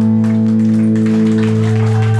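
Live rock band with electric guitar and bass holding a sustained low chord that rings steadily, with a few light drum hits.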